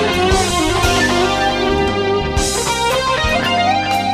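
Music led by an electric guitar playing sustained, bending lead notes over a drum beat.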